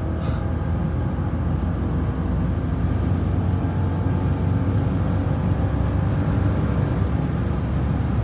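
Mercedes-Benz S55 AMG's 5.4-litre V8 pulling at high autobahn speed, heard from inside the cabin: a steady engine drone under tyre and wind noise.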